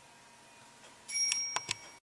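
Faint room tone, then about a second in a high electronic beep sounding with a few sharp clicks, cut off abruptly.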